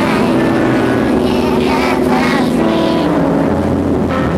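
Loud, dense electronic drone music played live: low sustained tones layered under wavering higher sounds, with no clear beat.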